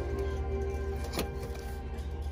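Background music with sustained held chords, and a brief click a little over a second in.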